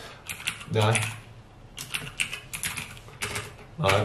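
Typing on a computer keyboard: irregular runs of quick key clicks, in clusters with short gaps between them.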